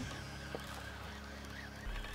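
Quiet background: a faint steady low hum under light hiss, with one small click about halfway through.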